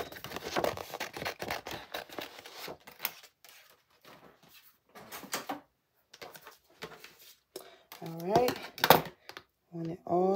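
Sheets of printed waterslide decal paper being handled, rustling and crinkling for the first few seconds, then a few faint scattered clicks. A voice comes in briefly near the end.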